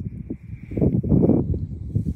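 Wind buffeting the microphone: a low, uneven rumble that swells and drops.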